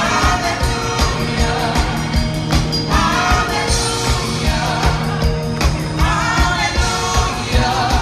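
Gospel vocal group singing together in harmony over a band accompaniment with a steady beat, about four beats a second.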